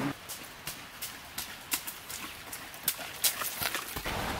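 A quiet run of irregular sharp clicks and knocks, about four a second, over faint background hiss.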